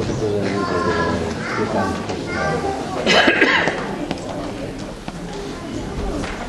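People's voices talking in a large hall, not music, with a louder burst of sound about three seconds in.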